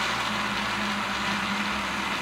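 Moulinex countertop blender running steadily at one speed, with a constant low motor hum under the whir, puréeing soaked cashews and coconut water into a creamy paste.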